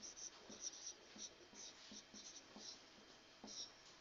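Marker writing on a whiteboard: faint short strokes as figures are written out, with a brief pause about three seconds in.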